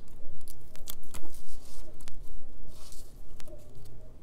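Hands handling a planner page and a paper sticker strip: scattered light taps and paper rustles, with a longer rustle about three seconds in.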